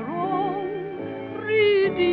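Music from an old 1928–1947 gramophone-era recording: a melody line with steady vibrato and sliding pitch over accompaniment, with the treble cut off.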